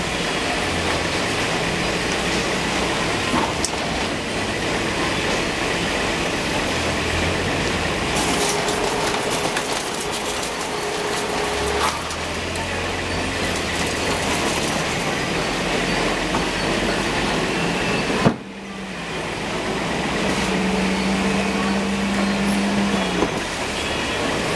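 Vegetable packing line machinery running: the bin dumper and roller conveyor give a steady mechanical din with low motor hums and scattered knocks, the sharpest about eighteen seconds in.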